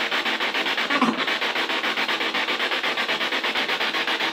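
Radio spirit box (ghost box) sweeping through stations: a steady, loud, rapidly chopped static hiss, pulsing about ten times a second, with a brief snippet of tone about a second in.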